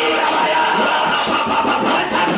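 Loud, continuous church praise and worship: amplified music with many voices of a congregation worshipping together.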